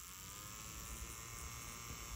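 Small plastic electric desk fan running: a faint, steady motor whine with a hiss of moving air. Its pitch creeps up over the first second as the fan comes up to speed, then holds level.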